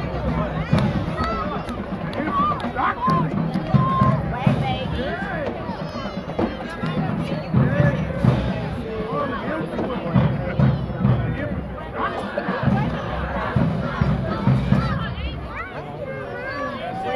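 High school marching band playing, its low brass and drums coming and going, under loud crowd chatter and shouts from the stands.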